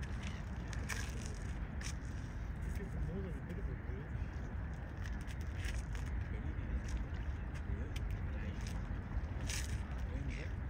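Steady low rumble of a distant jet airliner in flight.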